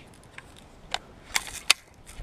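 A gun handled in the hands: four short, sharp mechanical clicks, the last and loudest near the end.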